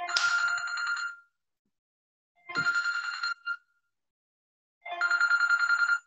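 Telephone ringing: an electronic ringtone with a fast trill, sounding three times, each ring about a second long and about a second and a half apart.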